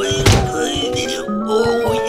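A single cartoon thud about a quarter second in, a small character landing on a wooden floor, over background music.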